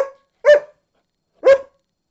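A dog barking three times, loud and sharp: two quick barks, then a third about a second later.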